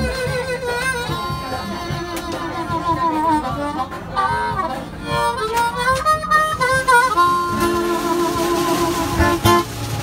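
Harmonica played into a hand-held microphone: a run of held notes and chords with pitch bends in the middle, ending on a long held chord that stops shortly before the end.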